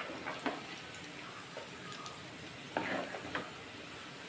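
Kothimbir vadi fritters deep-frying in hot oil with a steady sizzle. A slotted metal spoon turns them in the pan, knocking briefly against it about half a second in and again near three seconds.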